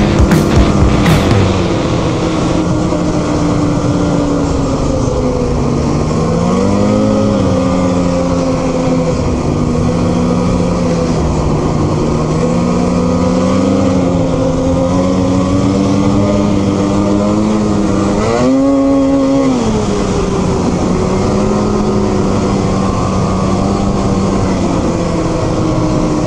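Two-stroke snowmobile engine running under way, a steady drone whose pitch rises and falls with the throttle. It climbs sharply twice, about a quarter of the way in and again about three quarters through.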